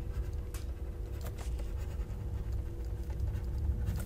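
Stylus writing on a pen tablet: a few faint, light scratching strokes and taps as words are handwritten, over a low steady background hum.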